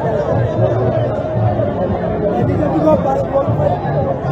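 Large street crowd shouting and chanting, many voices overlapping at a steady high level, with a repeating low pulse underneath.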